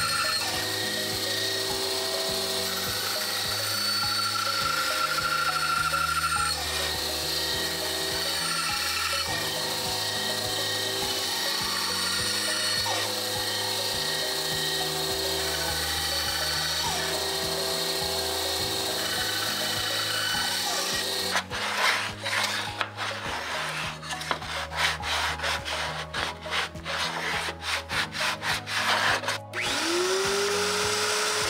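A benchtop band saw cutting a curve through half-inch plywood, heard under background music. For about the last eight seconds there is a fast, irregular run of scratchy scraping strokes.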